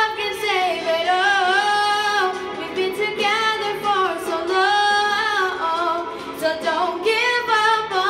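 A girl singing a slow melody into a handheld microphone, holding long notes with a wavering vibrato.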